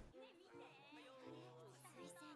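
Near silence, with faint, distant-sounding voices of anime dialogue playing in the background.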